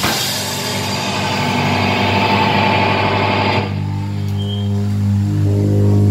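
Live rock band playing, electric guitar, bass guitar and drum kit together with no vocals. About three and a half seconds in the full, cymbal-bright sound breaks off, leaving held low guitar and bass notes ringing.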